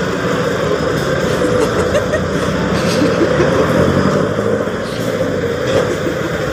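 Steady street traffic noise: vehicle engines running.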